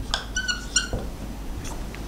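Dry-erase marker squeaking on a whiteboard while writing: a few short, high squeaks in the first second.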